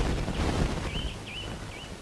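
A small bird chirping repeatedly: short, wavy whistled notes about two a second, starting about a second in. Before that there is a brief rustling noise.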